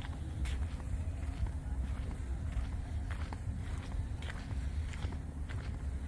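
Footsteps of a person walking on a paved path, about two steps a second, over a steady low rumble.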